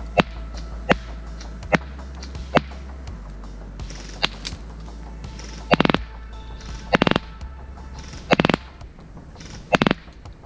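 E&L AK-74N electric airsoft rifle firing single shots: short sharp cracks in the first half, then four heavier, louder shots spaced about a second or more apart. Background music with a steady bass plays underneath.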